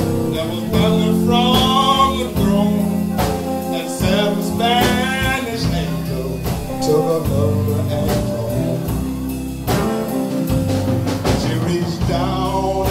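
Live blues band playing a slow song: electric guitars, bass guitar and drum kit. A high lead line wavers in pitch about a second in and again around five seconds.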